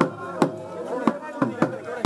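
Sharp percussion strikes, about five at an uneven beat, each with a short ring, over a crowd of voices.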